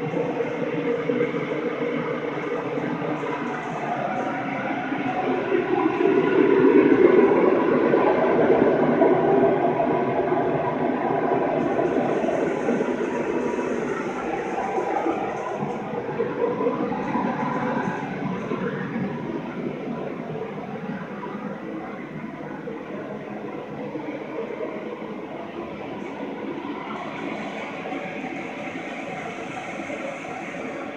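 A steady machine-like noise that swells about six seconds in and then slowly fades.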